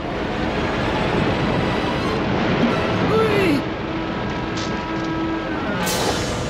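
Cartoon sound effect of rushing flood water and a waterfall: a steady, loud rushing noise with faint music underneath and a short sliding note that falls about three seconds in.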